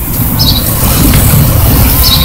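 Outdoor street ambience on a phone microphone: a steady low rumble, like traffic, with a couple of short high chirps, one about half a second in and one near the end.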